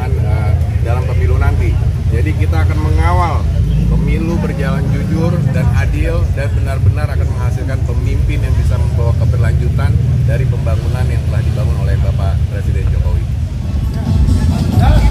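A man speaking over a steady low rumble, typical of idling motorcycle engines.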